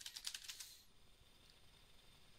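Computer keyboard typing: a quick run of faint keystrokes that stops under a second in.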